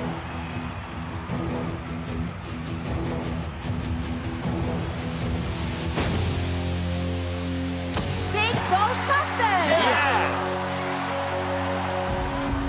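Cartoon soundtrack: a tense background score of sustained notes under crowd noise, with a sharp kick of a football about six seconds in and another impact about two seconds later, followed by a crowd cheering.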